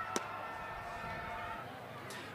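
A single sharp pop of a pitched baseball striking the catcher's leather mitt on a swing-and-miss strikeout, about a fifth of a second in, over a faint murmur of the ballpark crowd.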